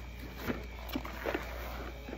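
Soft handling noises, with a few faint knocks as a cardboard box is gripped and moved aside, over a steady low hum.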